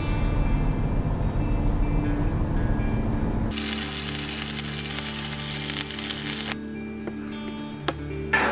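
A fishing boat's low rumble at sea, then arc welding with a stick electrode: a loud, dense crackling hiss that starts suddenly about three and a half seconds in and cuts off about three seconds later. Soft background music plays throughout.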